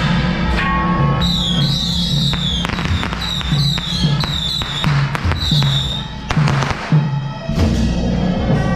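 Temple procession percussion band playing: a steady drumbeat about twice a second with sharp crashes of cymbals or gongs, under a high wavering melody that runs through the middle and stops about six seconds in.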